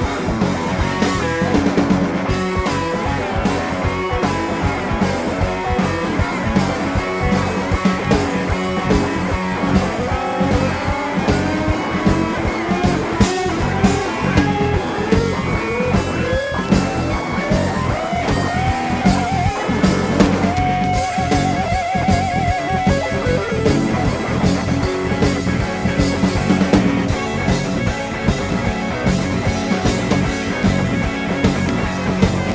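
Live rock band playing an instrumental passage: guitar, bass and drum kit, with harmonica over the top. A lead line holds a wavering note about twenty seconds in.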